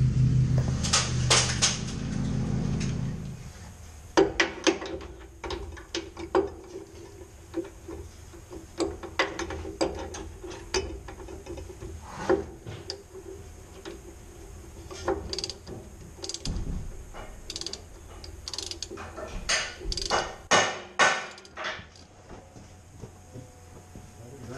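Mechanic's hand tools at work under a truck: a ratchet wrench clicking in short runs, with scattered metal clinks and knocks, over a faint steady hum.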